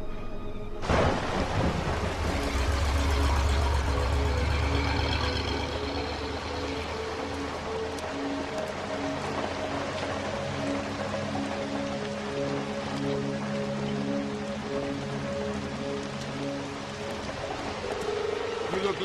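Heavy rain that comes on suddenly about a second in and keeps falling steadily, with a deep rumble of thunder over the next few seconds. Sustained notes of a film score play underneath.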